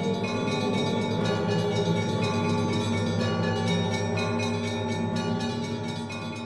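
Closing music of many bells ringing together in a dense, steady peal, their overlapping tones sustained and layered.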